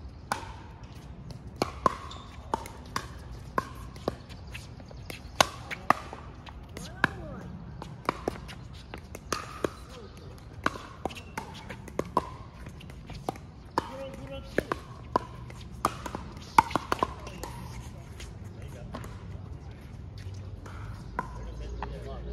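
Pickleball paddles striking the plastic ball: a string of sharp, irregular pops, several in quick succession at times, from rallies on this and nearby courts, growing sparser near the end.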